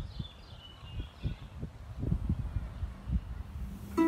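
Outdoor ambience: a few short bird chirps in the first second and a half, over an uneven low rumble.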